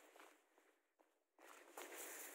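Faint footsteps in fresh, deep snow under sneakers: two soft, noisy steps, one fading just after the start and the next building near the end.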